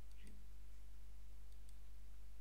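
Two pairs of faint computer mouse clicks, one pair near the start and the other about a second and a half in, over a steady low electrical hum.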